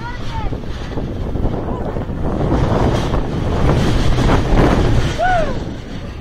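Steel roller coaster train rolling along its track toward the station, a deep rumble of wheels with wind on the microphone that builds to a peak and then falls away about five and a half seconds in.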